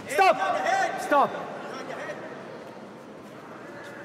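A loud, drawn-out shout from someone at ringside, lasting about a second near the start and dropping in pitch as it ends, followed by a steady low background hubbub in the hall.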